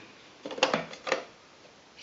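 Plastic drip tray and cup stand of a Tassimo T55 capsule coffee machine being lifted out and slotted back into the machine: a few light plastic clicks and knocks in the first half, then quiet.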